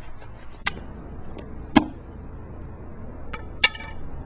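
Hard-soled dress shoes tapping on pavement: four sharp clicks, the loudest a little under two seconds in and two close together near the end, over a faint steady hum.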